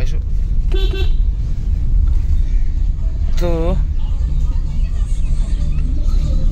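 Steady low rumble of a Maruti Suzuki Alto 800 heard from inside its cabin while driving: engine and road noise.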